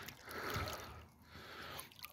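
Pond water swishing faintly as a dip net is swept through it just below the surface, in two sweeps.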